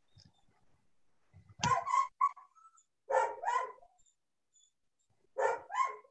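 A dog barking in three pairs of quick barks, about a second and a half apart, heard over a video call.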